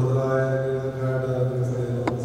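A man chanting a liturgical prayer into a microphone, holding one steady recitation pitch, amplified through a loudspeaker system.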